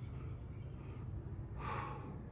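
A man breathing hard while holding a side plank, short puffs of breath with a louder, longer exhale near the end, over a steady low hum.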